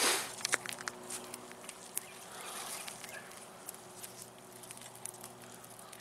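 Dry brush and twigs crackling and clicking as a smouldering burn pile is stirred with a pitchfork, with a brief rustling burst at the very start and scattered irregular snaps after it.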